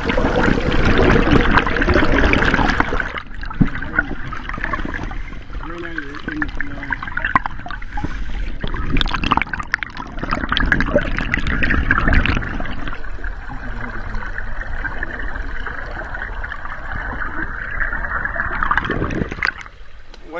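River water rushing and splashing, heard from a camera submerged in a fish trap's collection box, loudest in the first few seconds. Sharper splashes come and go as a dip net is worked through the water.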